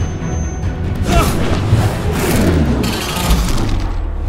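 Dramatic film score with deep booming hits and whooshing swells; a falling tone slides down about halfway through.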